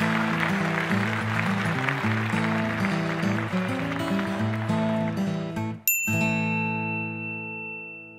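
Outro music. About six seconds in it stops briefly, then lands on a final held chord with a high steady tone that rings and fades away.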